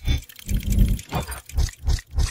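Sound effects of an animated logo intro: a run of deep, heavy mechanical hits, with one longer rumble about half a second in, then several short hits in quick succession.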